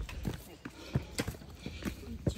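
Footsteps on stone steps: a string of irregular hard taps as hikers walk down a rough stone stairway.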